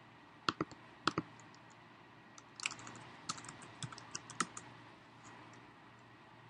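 Computer keyboard typing: a few separate keystrokes in the first second or so, then a quicker run of keys from about two and a half to four and a half seconds in.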